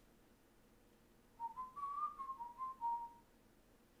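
A short whistled tune of several quick notes, stepping up in pitch and then back down, starting about one and a half seconds in and lasting under two seconds, over faint hiss.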